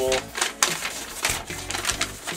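Paper and cardboard rustling and crackling in several short sharp bursts as a shipping box is unpacked and an invoice slip pulled out.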